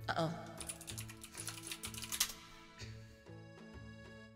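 Fast computer keyboard typing, a dense run of clicks lasting about two seconds, with a few more keystrokes shortly after. Soft background music with a steady repeating bass line plays underneath.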